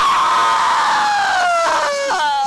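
A man's long, loud scream sliding steadily down in pitch, as from a man being put to death in an electric chair.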